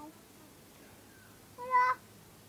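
A young child's single short, high-pitched call near the end, rising slightly in pitch, like a squeaky "hello?" into a pretend phone.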